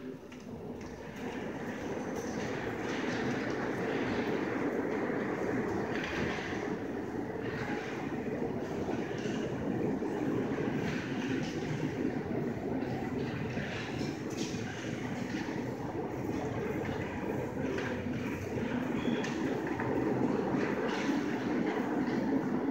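Steady rumbling noise that builds up over the first couple of seconds and then holds.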